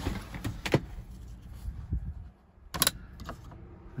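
Handling clatter in a van cab: a few sharp clicks and knocks, then a louder cluster of clicks a little under three seconds in as the metal probe of an automotive test light is pushed into the 12 V accessory socket.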